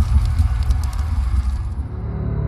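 Animated logo-reveal sound effect: a deep, loud rumble under a fire-like crackling hiss with scattered sharp crackles, the crackling fading out near the end.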